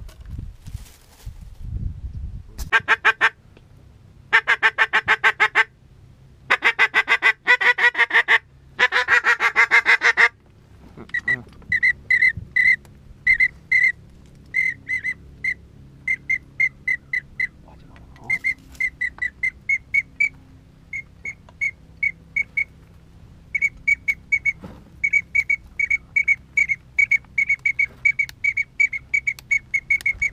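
Hand-blown duck calling close by: first several long, raspy, wavering calls, then from about eleven seconds in, many short high peeps in quick runs on a duck whistle, going on to the end.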